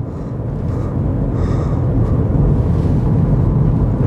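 Car cabin noise while driving: a steady low rumble of engine and tyres on a wet road, slowly growing louder.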